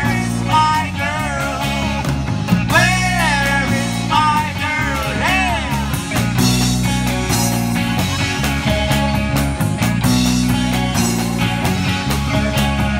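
Live rock band playing: electric guitars, bass guitar and a Sonor drum kit. A lead line bends up and down in pitch over the first five seconds or so, then the playing settles into steadier held notes.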